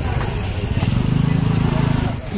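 Street traffic with a small motorcycle or scooter engine running close by, a steady low running sound.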